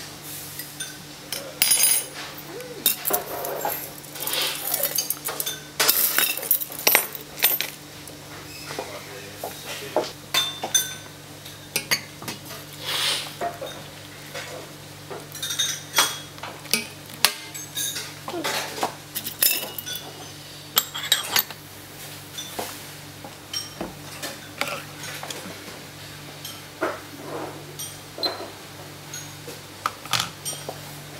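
Irregular clinks and taps of a metal teaspoon, brass scale pans and white porcelain tasting ware as loose tea is weighed and spooned out, over a steady low hum. Around the middle, hot water is poured from a steel kettle into a porcelain tasting mug, and near the end the china lid is set on the tasting pot.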